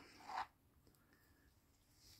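Near silence, with one brief, faint scrape in the first half second.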